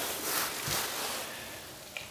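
Soft, steady hiss from small burning alcohol stoves, the just-relit penny stove's alcohol starting to heat toward a boil, with one faint low bump a little under a second in.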